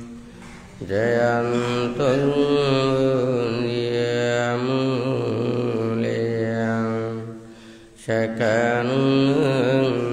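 A Buddhist monk's voice chanting in Pali on a low, nearly level pitch, heard through a microphone. It runs in two phrases with a breath break about seven and a half seconds in.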